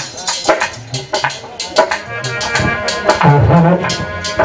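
Live devotional folk music: a dholak drum plays a steady rhythm with sharp jingling percussion strikes between the drum strokes, and a heavier low drum stroke a little past three seconds in.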